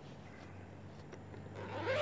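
Zipper of a saxophone case being drawn open, one short zip swelling near the end, over a steady low hum.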